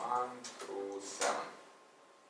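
A man's voice muttering briefly, two short voiced sounds in the first second, then a short hiss a little past a second in, after which only quiet room tone remains.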